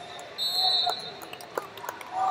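Wrestling-tournament arena sound: voices calling out, a short high-pitched steady tone that is loudest about half a second in, and a few sharp slaps or knocks from the mat.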